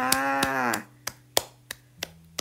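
A woman's voice holding the Thai polite particle "kha" for most of a second, its pitch falling at the end. Then a few sharp clicks over a faint low steady hum.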